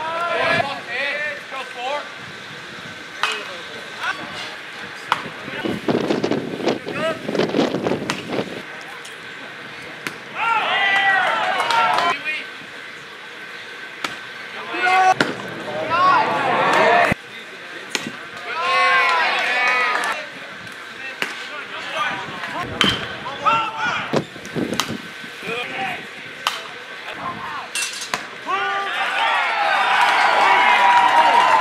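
Baseball game sounds: players and spectators calling out and shouting in separate bursts of a second or two, with a few sharp knocks in between and louder shouting near the end.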